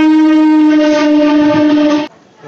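Horn of a suburban electric local train arriving at a platform: one long, loud, steady blast held at a single pitch, cut off suddenly near the end.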